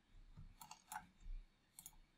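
A few faint computer mouse clicks over near silence, with a soft low thump in between.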